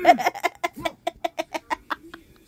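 A person cackling: a quick run of short, pitched vocal bursts, about seven a second, loudest at the start and tapering off.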